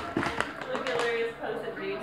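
Plastic water bottle knocking twice against a countertop in the first half second as it lands from a flip, followed by a child's voice.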